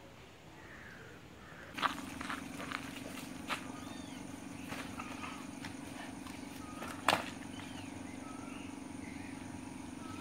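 Dog dragging and carrying a dry palm frond across bare dirt: scattered scrapes and a few short knocks, over a steady low hum, beginning about two seconds in.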